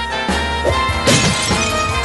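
Upbeat dance music with a regular beat, and a bright crash about a second in.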